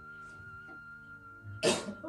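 Soft, sustained background music with held notes, and one short, loud cough from a man near the end.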